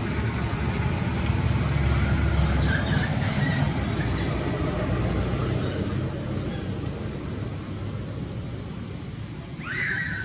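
Steady low rumbling background noise outdoors, with a few faint high chirps and a short high squeak about a second before the end.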